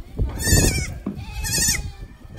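Young goat kid bleating twice: short, wavering cries about half a second and about one and a half seconds in.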